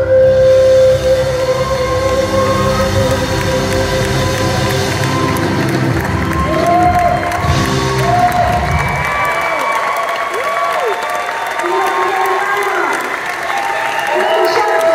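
A live band with a female singer finishes a song: a held sung note over full band with drums and guitars, then about nine seconds in the music stops and the audience cheers and applauds, with whoops and whistles.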